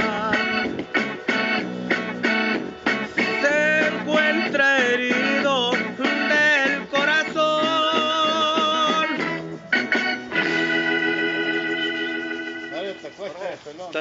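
A man singing a slow romantic ballad in Spanish, his voice wavering with vibrato, ending on a long held note that fades away near the end.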